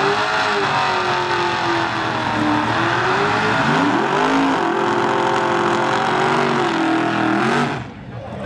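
Drag-race car engine revving hard during a burnout at the start line, its pitch sagging and climbing again several times. The sound cuts off suddenly near the end.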